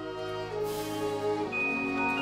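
Orchestral music: a low held note under slowly changing sustained chords, with a high held note coming in about a second and a half in.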